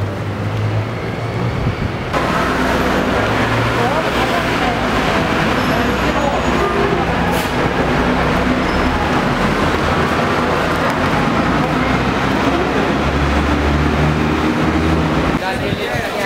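City street ambience: road traffic with the voices of passers-by. It gets louder and denser about two seconds in and then holds steady.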